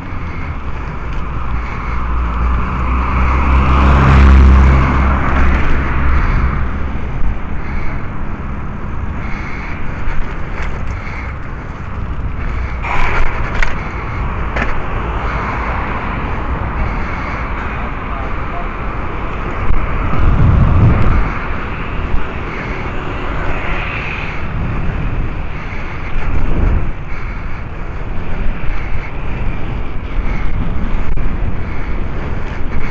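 Road traffic heard from a moving bicycle, with steady wind rush on the microphone. A motor vehicle passes, loudest about four seconds in, and another low rumble passes about twenty seconds in.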